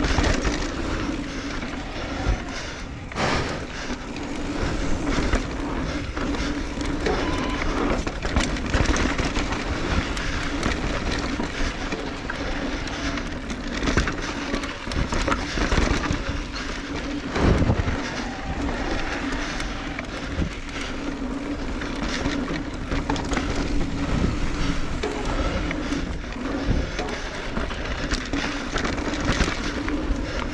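Electric mountain bike ridden down a dry, rutted dirt trail: a continuous rush of tyres on loose dirt, with frequent knocks and rattles from the bike over bumps and a steady low hum underneath.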